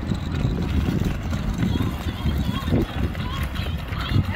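Outdoor wind rumbling and buffeting on the microphone, with indistinct voices of passers-by faintly in the background.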